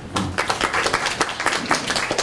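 Audience applauding with hand clapping.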